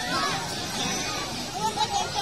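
Children shouting and calling out as they play in the sea, over a steady background wash.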